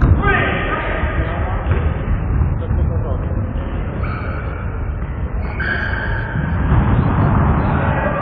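Players' shouts echoing in a sports hall during an indoor football game, over low thuds of the ball and feet on the wooden floor. One thud comes right at the start, and there are shouts just after it and again around the middle.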